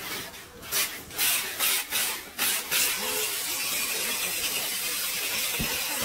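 Packing tape ripping off a handheld tape dispenser in quick repeated strokes, about three a second; from about three seconds in it runs off the roll as one continuous hiss while the box is spun.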